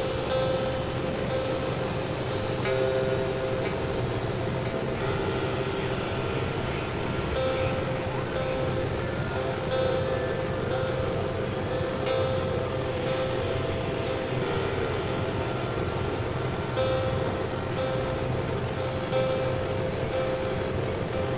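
Experimental electronic drone and noise music: a dense, steady, rumbling synthesizer texture with held mid-pitched tones that come and go every few seconds, and a few faint sharp clicks.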